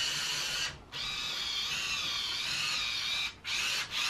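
Small electric drive motors of a ROBOTIS PLAY 700 OLLOBOT robot car whining as it drives under phone-app control. The whine stops briefly about a second in and twice near the end, starting again each time.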